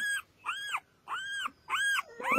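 Indian indie puppy whimpering: four short, high-pitched whines about half a second apart, each rising and then falling in pitch.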